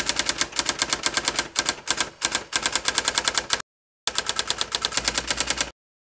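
Typewriter typing sound effect: a rapid, even run of key clicks, about ten a second, that pauses briefly past the middle and stops shortly before the end.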